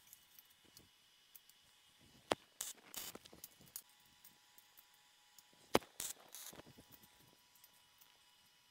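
Steel square tubing and locking pliers being handled and clamped: two sharp metal clicks about three and a half seconds apart, the second the louder, each followed by softer scraping and rattling of the tubing.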